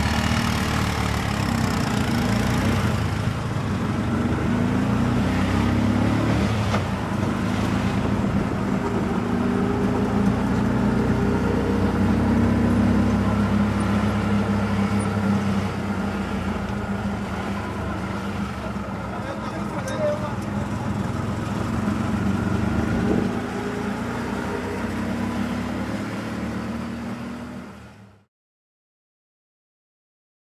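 Auto-rickshaw's small engine running while riding in city traffic, heard from inside the open cab, its pitch shifting up and down with the throttle. It fades out right at the end.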